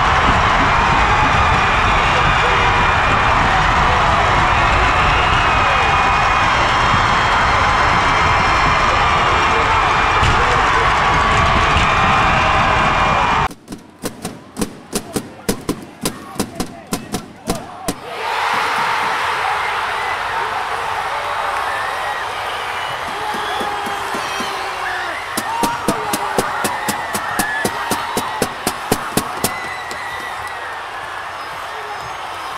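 Ice hockey arena crowd: a loud, dense roar of voices and cheering that drops off suddenly about halfway through into steady rhythmic clapping, about three or four claps a second. The crowd noise then returns, and near the end another run of rhythmic clapping starts.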